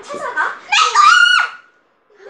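A girl's high-pitched shriek, about a second long, that ends in a sharp drop in pitch, after a short vocal sound at the start.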